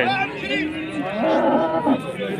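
A cow mooing once, a single steady low call of under a second, starting just over a second in, over crowd chatter.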